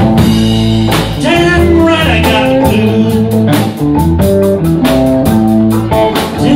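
Live blues band playing: a Telecaster-style electric guitar bending notes over bass guitar and drum kit.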